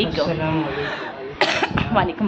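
A man's voice, speaking softly, with a single cough about one and a half seconds in.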